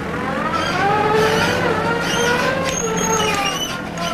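Engine of a construction loader with a hydraulic digging arm, running and rising in pitch, then easing back down as it works.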